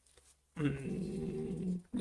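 A man's drawn-out filler sound, "uhhh", held at one low pitch for over a second. It starts about half a second in.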